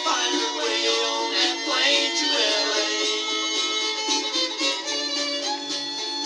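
Instrumental break of a band song, a fiddle playing the lead line with sliding notes over the band's accompaniment, no singing. The recording is thin, with little bass.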